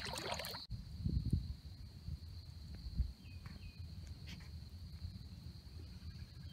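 Low, uneven rumble of wind on the microphone outdoors in a marsh, with a few faint short bird chirps about three seconds in.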